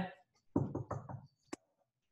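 Knuckles rapping on a window pane to scare off a bird: a quick run of about four knocks, then a single sharp tap about a second and a half in.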